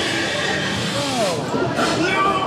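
Voices without clear words over a loud, dense haunted-maze soundtrack of music and noise, with a drawn-out falling cry about a second in.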